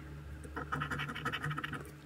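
A coin scratching the latex coating off a scratch-off lottery ticket: a rapid run of short rasping strokes that starts about half a second in.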